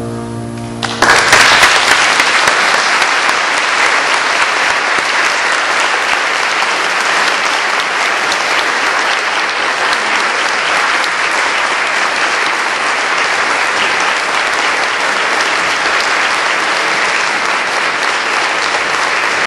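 A grand piano's final chord dies away, then audience applause breaks out about a second in and continues steadily.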